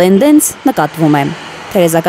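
Speech: a news narrator talking, in Armenian, with a steady hiss of street noise heard underneath in the brief pause about halfway through.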